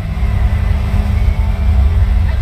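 Loud, bass-heavy music over a stage sound system.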